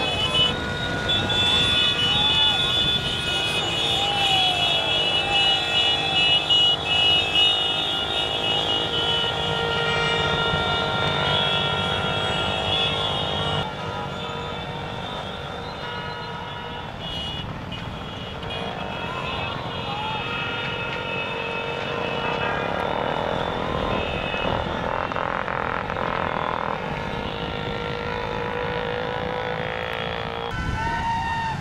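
A pack of motorcycles running together, with voices and long, steady high-pitched tones over the engine noise. The sound changes abruptly a little before halfway, becoming slightly quieter.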